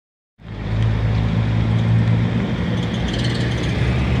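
A vehicle engine running steadily nearby, a low hum over street noise, starting a moment in.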